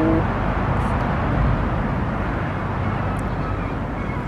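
Steady low outdoor background rumble with no distinct events. A woman's drawn-out "wow" trails off right at the start.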